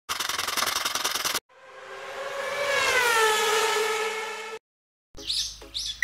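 A fast, even buzzing rattle for about a second and a half, then a long whistle-like tone that swells, dips slightly in pitch and holds before cutting off. Bird chirps begin near the end.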